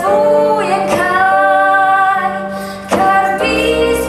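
A young female voice singing a slow melody with long held notes, with new phrases starting about a second in and again near the end.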